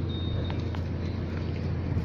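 Steady low outdoor background rumble with no clear single source, with a faint high tone and a couple of faint ticks.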